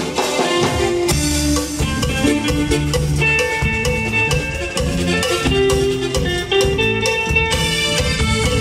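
Live band playing an instrumental passage: electric keyboards, electric guitar and drum kit with a steady beat, a held keyboard melody coming in about three seconds in.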